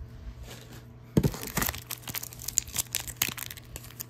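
A foil sticker-pack wrapper crinkling and crackling as it is handled and torn open by hand. It is quiet at first, then a dense run of sharp crackles starts about a second in.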